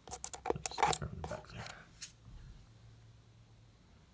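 Handling noise from hands and the phone moving over a guitar's body: a quick run of clicks, taps and rubbing, over in about two seconds.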